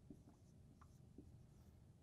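Faint squeaks and light taps of a dry-erase marker writing on a whiteboard: a few short strokes over a low steady hum.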